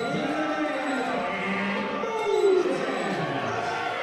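Wrestling crowd in a hall shouting and chanting, several voices overlapping in a steady murmur of calls.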